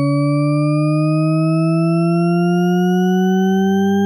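A steady, electronically processed buzzing tone, rich in overtones, gliding slowly and evenly upward in pitch. A lower hum joins under it near the end.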